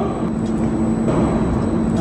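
Steady low rumble with a constant hum: the background noise of an underground parking garage.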